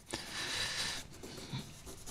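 A square of Gorgomyte fret-polishing cloth rubbing along the frets of an old, grimy guitar fretboard, a dry scrubbing hiss that is strongest in the first second and fainter after.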